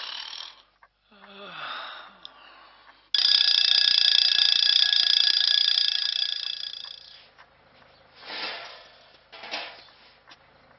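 A sleeper snoring, then an alarm clock bell that starts suddenly about three seconds in, rings loudly and steadily for about four seconds, and fades away.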